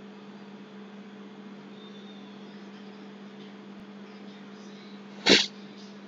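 A steady low electrical hum with hiss, broken about five seconds in by one short, loud burst of noise.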